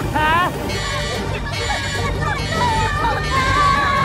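A cartoon voice yelling in wavering, drawn-out cries over film music, with a low steady rumble of the rocket blasting off underneath.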